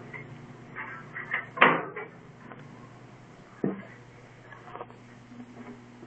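A door or cupboard being shut: a few knocks and clacks, the loudest about a second and a half in and another near four seconds in.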